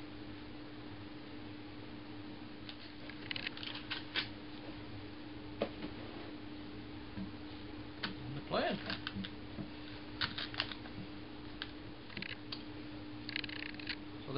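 Paper packaging rustling and crackling in short bursts, with light clicks and knocks as a new metal hand plane and its blade are unwrapped and handled on a wooden workbench. A steady low hum runs underneath.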